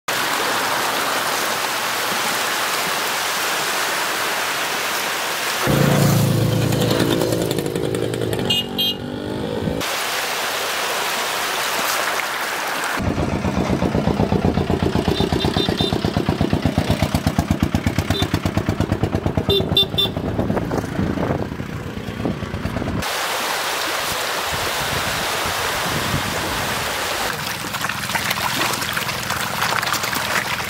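Water splashing and churning from a dense crowd of fish thrashing at the surface. In the middle there is road sound: a loud pitched honk, then a motor engine running with a steady rapid pulse for about ten seconds, before the splashing returns.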